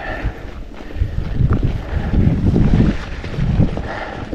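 Wind buffeting the microphone of a mountain bike's action camera: a low rumble that swells and fades in gusts, heaviest about two seconds in, while the bike rolls along a dirt trail.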